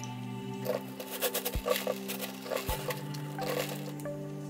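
Bleach pouring from a plastic gallon jug into a glass jar, a run of irregular glugs and splashes, over steady background music.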